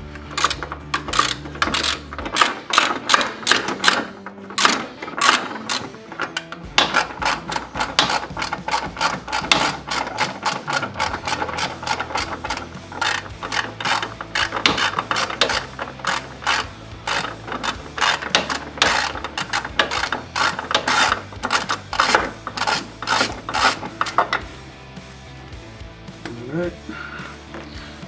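Hand ratchet clicking in rapid runs as it backs out the bolts that hold a running board to the frame. The clicking stops about three-quarters of the way through, once the bolt is out.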